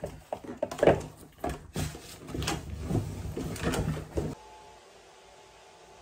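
Irregular knocks, clicks and rustling of small objects being handled and picked up, as makeup things are gathered to move elsewhere. It stops suddenly about four seconds in, leaving a faint steady room hiss.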